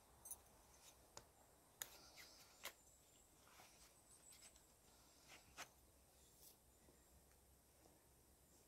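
Near silence broken by a few faint, sharp clicks and light rustles from hand work with a knife and cordage at a log wall.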